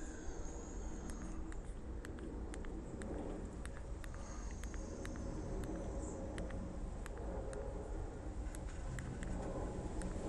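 Scattered faint clicks at irregular intervals over a steady low rumble of background noise.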